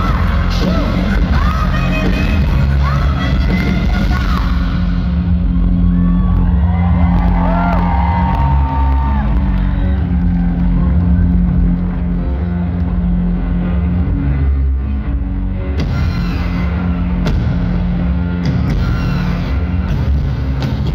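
Loud live industrial-rock band music through a venue PA, recorded from within the crowd, with a heavy, steady bass line. From about five seconds in to about sixteen seconds the treble drops away and the sound turns muffled, then the full range comes back.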